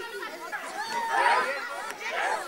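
Several children's voices chattering at once, high-pitched and overlapping, with no single voice standing out.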